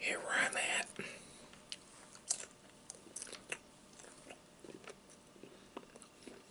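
Close-miked chewing of bacon: irregular sharp mouth clicks and short crunches, with a louder burst in the first second.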